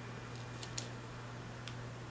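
A few small crisp clicks and crackles of a paper planner sticker being pressed and smoothed down onto the page, over a steady low hum.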